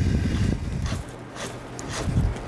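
Low rumbling handling noise with faint rubbing as a clamp on a stainless steel valve fitting is tightened by hand. It is louder at first and drops away about a second in.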